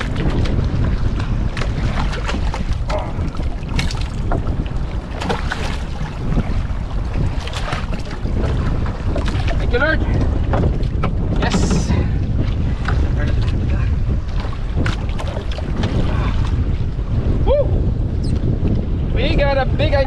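Wind buffeting the microphone over a steady low rumble from a small outrigger boat, with scattered knocks and splashes as a bigeye trevally is landed by hand over the side.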